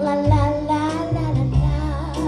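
A woman singing a show tune over live accompaniment, with held notes and a low bass line that steps to a new note a few times.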